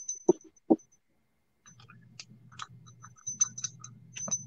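A small glass hand bell being handled, with light clicks and taps and short, faint, high tinkles. A faint low hum comes in during the second half.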